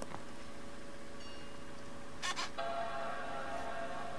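Apple Mac startup chime: a sustained chord that sounds about two and a half seconds in and rings on, just after a short noise. It signals that the computer has powered on and begun to boot.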